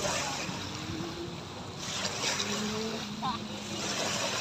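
Small waves washing onto the bay shore, with two stronger surges about two seconds apart. Faint voices are in the background.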